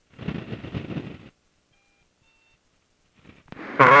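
Aircraft radio heard through the headset feed: a garbled transmission burst of about a second with no clear words, then two faint short beeps, with a radio voice starting near the end.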